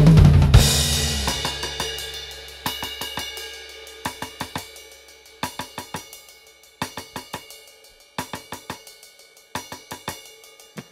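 A band's last chord dies away: a low bass guitar note and a cymbal ring out and fade over the first two seconds. The drummer then plays light, quick stick taps on the cymbals in short groups of four to six, one group about every second and a half.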